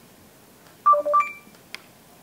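BlackBerry phone's NFC sharing tone: a quick run of short electronic beeps about a second in, ending on a higher, longer note, signalling that the tap-to-share connection has gone through. A faint click follows.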